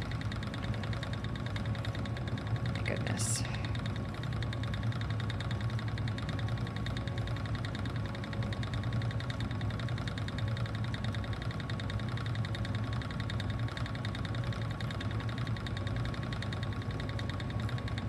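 Ashford Elizabeth II spinning wheel running steadily under treadling while plying, the turning wheel, flyer and bobbin giving a continuous even whir with a low hum. A brief high hiss about three seconds in.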